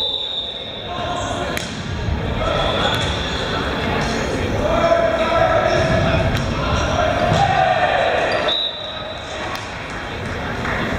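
Echoing gymnasium noise: many voices talking and calling over one another across a large hall, with balls bouncing and knocking on a hardwood floor.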